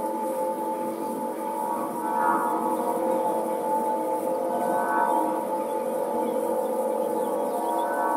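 Aeolian wind harp, its strings tuned to A=432 Hz, sounded by the wind: a sustained drone of many overlapping overtone pitches that swells briefly about two seconds in and again around five seconds.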